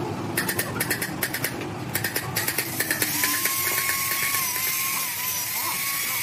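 A run of quick clicks, then about three seconds in a handheld electric drill starts and runs with a steady whine, its pitch wavering slightly near the end.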